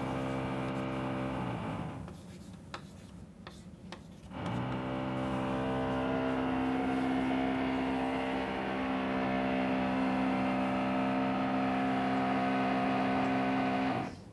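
A steady hum made of several even tones, fading away about two seconds in and coming back about four and a half seconds in.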